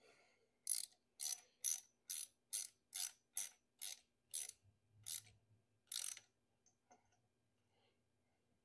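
Ratchet wrench turning a hose clamp on a coolant hose, with about eleven quick ratcheting strokes roughly two a second. The strokes spread out toward the end and stop about six seconds in.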